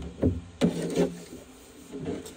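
Short rubbing and scraping noises with soft knocks, about three in quick succession in the first second, then fading: something being handled against a hard surface.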